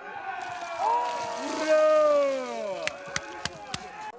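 Cold water poured from a bucket over a person's head, splashing down, with long shouts that slide down in pitch. A few sharp clicks come near the end.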